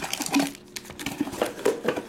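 Handling noise from a cardboard trading-card box: irregular scrapes, rustles and small knocks as fingers feel around inside the open box and then shift it on the table.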